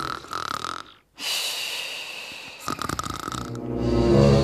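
Cartoon snoring sound effect: breathy snores with a brief break about a second in, then a long breathy snore and a rattling snore near the end.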